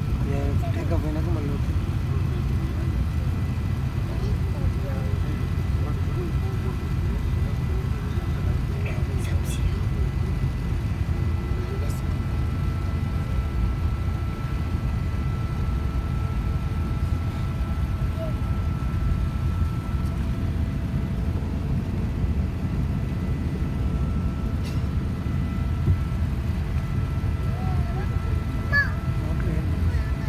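Airliner cabin noise while the plane taxis: a steady low rumble from the engines and air system, with a faint steady high whine that drops out for a few seconds about two-thirds of the way through.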